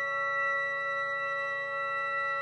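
Woodwind quintet of flute, oboe, clarinet, bassoon and horn holding a long sustained chord, several notes steady without any new attack.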